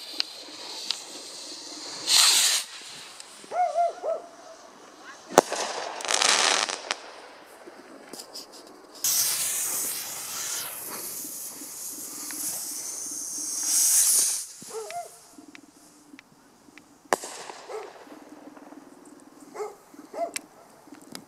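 Backyard consumer fireworks: several hissing bursts of half a second to two seconds as rockets and fountains burn and launch, and two sharp cracks. A dog barks a few times in between.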